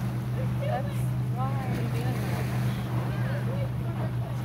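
Steady low engine drone from a motorboat out on the water, holding one pitch, with faint distant voices of children over it.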